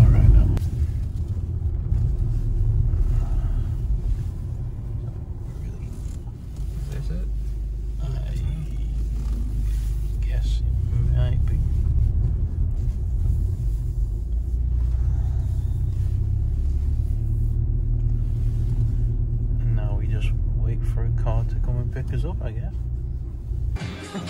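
Steady low rumble of a car driving, heard from inside the cabin: engine and tyre noise on the road, easing briefly about six seconds in before picking up again.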